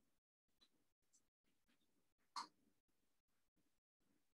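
Near silence broken by a few faint, short computer keyboard keystrokes as a search is typed, the loudest about two and a half seconds in.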